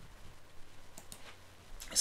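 Two faint clicks of a computer mouse, close together about a second in.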